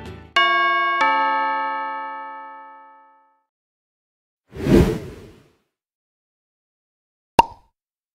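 Two-note chime sound effect, like a doorbell ding-dong, whose notes ring out and die away over about two seconds. A short whoosh follows about four and a half seconds in, then a sharp click near the end.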